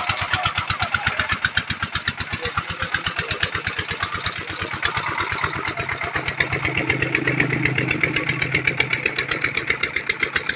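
An engine running steadily with a regular, even beat of about eight pulses a second. A lower hum swells under it in the second half.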